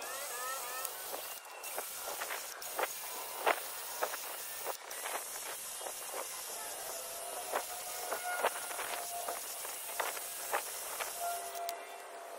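Scattered metallic clicks and taps of tools and wheel bolts, over a steady hiss, with a cordless impact wrench's motor whining thinly for a few seconds in the second half as a wheel bolt is spun out.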